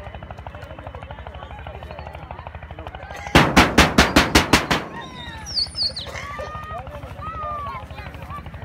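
A rapid burst of about nine sharp bangs, some six a second, lasting about a second and a half near the middle, like a burst of gunfire.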